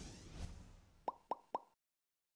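Three quick 'plop' sound effects about a second in, each a short tone dropping in pitch, about a quarter-second apart, after the fading tail of a swish.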